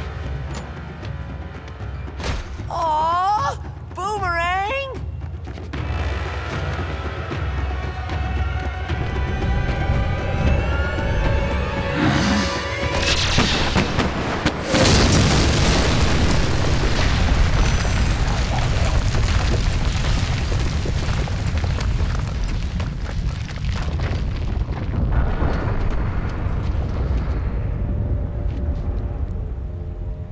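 Dramatic orchestral score under a large cartoon explosion effect: a sudden, loud blast about halfway through, with a rumble that carries on for several seconds before dying away. It is a firebender's combustion blast going off.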